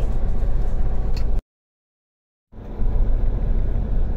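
Steady engine and road rumble heard from inside a moving tractor-trailer's cab. About a second and a half in, the sound cuts out completely for about a second, then fades back in.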